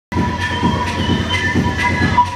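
Techno played loud over a club sound system: a steady pulsing beat, about four pulses a second, under sustained high droning tones.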